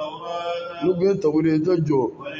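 A man reciting in a chanted, sing-song voice into a microphone, with a short break partway through.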